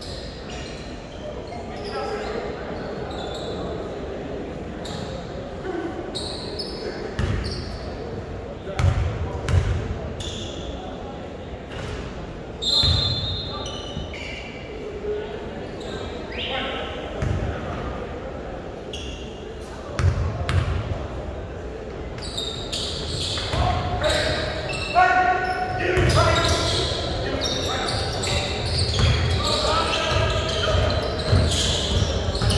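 A basketball bouncing on a hardwood gym floor in irregular thuds, with a brief sneaker squeak partway through. Players' shouts and calls echo in the hall, getting busier toward the end as play resumes.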